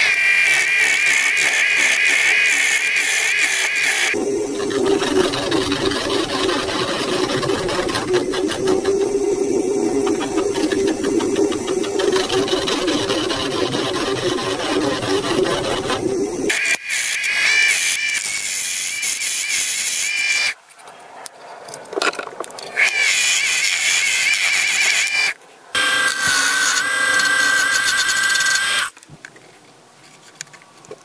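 Small wood lathe spinning a wooden handle blank while a hand-held turning tool cuts into it. There is a steady high whine whose pitch shifts as the cut goes on. The sound cuts off suddenly about two-thirds of the way through, comes back in two shorter runs, and stops shortly before the end.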